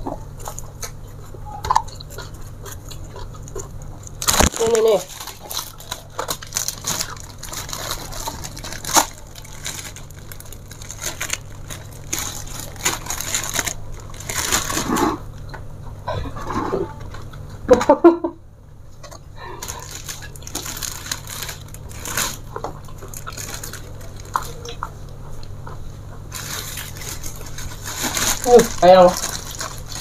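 Eating by hand from a plate: chewing and mouth sounds, with scattered light clicks of fingers and food against the plate. A few short murmured voice sounds come through, over a steady low hum.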